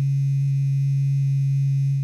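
A loud, steady low electronic tone: one held note with a faint overtone above it, used as the transition sound for a segment title card.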